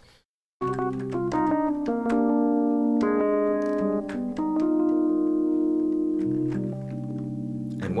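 Lounge Lizard EP-4 software electric piano on a Rhodes patch, playing a slow run of held chords that come in about half a second in after a brief silence.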